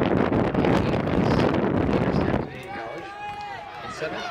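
Wind buffeting the microphone in a loud, low rumble that cuts off about two and a half seconds in. The voices of people talking and calling out are then heard over a quieter open-air background.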